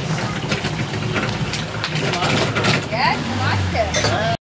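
Machete striking a coconut shell: a run of sharp, irregular knocks over a steady low hum.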